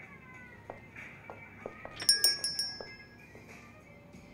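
Film score music: a sustained tone under a run of short struck notes, with a burst of bright, high bell-like chime strikes about halfway through that rings out briefly.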